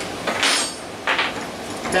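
Two short scrapes and clinks of a length of steel threaded rod being set down on a wooden workbench, with a faint metallic ring, then a sharp click near the end.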